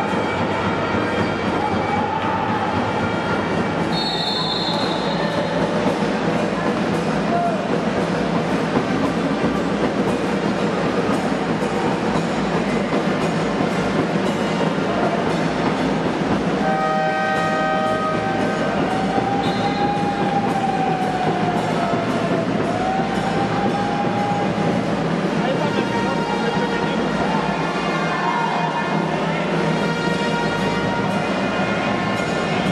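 Steady noisy hum of a basketball hall with indistinct crowd voices. A short, high referee's whistle blast comes about four seconds in and another around twenty seconds in, when play stops for free throws.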